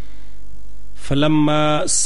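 Steady electrical mains hum running under everything; about a second in, a man's voice holds one long, level note, like a drawn-out chanted syllable.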